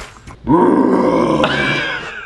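A man roaring into a long cardboard tube: one rough, growling roar that starts about half a second in, lasts about a second and a half, and shifts in tone partway through. He doubts the trick worked.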